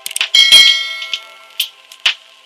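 A bright chime-like ding sound effect about half a second in, ringing out and fading over about a second, among sharp short clicks that recur roughly twice a second.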